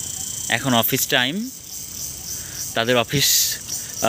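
Steady high-pitched chorus of insects such as crickets, fading out about a second in.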